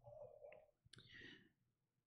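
Near silence: room tone during a pause in speech, with a few faint clicks about half a second and a second in.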